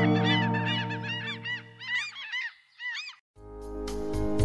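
A flock of gulls calling, many short arching cries overlapping, over the final acoustic guitar chord as it dies away. The cries thin out and stop a little after three seconds in, and new keyboard music starts near the end.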